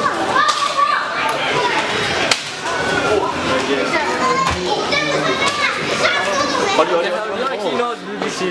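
Children playing and people talking all at once in a large store, an indistinct mix of kids' and young men's voices, with one sharp click about two seconds in.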